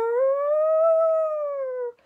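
One long siren-like howl from a voice. It rises steeply in pitch, holds high, then slowly sinks and stops abruptly near the end.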